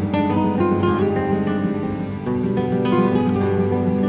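Instrumental music: acoustic guitars playing a folk melody in steady plucked notes over a fuller accompaniment.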